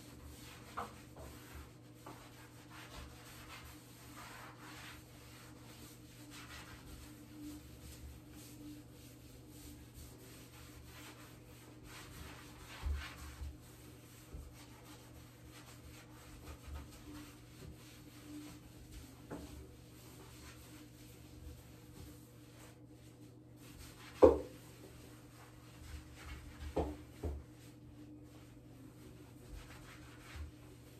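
A hand sponge rubbing tile sealer onto glazed wall tile in soft, repeated wiping strokes, over a steady low hum. A sharp knock about 24 seconds in is the loudest sound, followed by a few lighter knocks a couple of seconds later.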